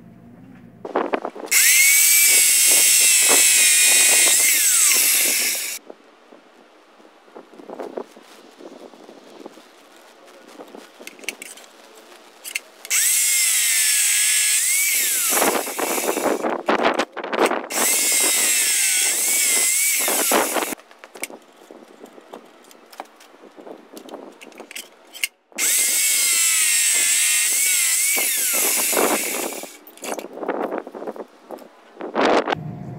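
A 6-inch abrasive cut-off saw slicing through flat steel bar, in three long cuts, each a few seconds long; the motor's whine sags and recovers in pitch as the disc bites into the steel. Between cuts there are clicks and clatter from the bar being handled and reclamped in the saw's vise.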